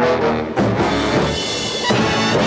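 Orchestral show music with brass and drums playing for a revue dance number.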